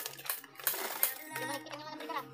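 Sharp clicks and rattles of concrete mix being tipped from a bucket into a wooden column form. Background music with singing comes in about a second and a half in.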